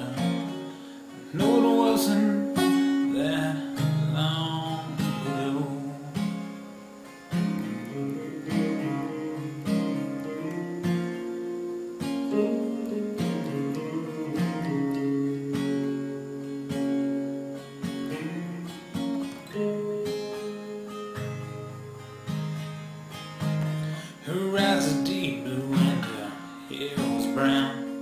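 Acoustic folk song music: an instrumental passage led by acoustic guitar, strummed and picked, with long held chords.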